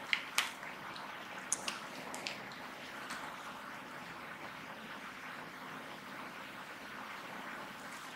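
Steady low hiss of room noise, with a few short faint clicks in the first couple of seconds.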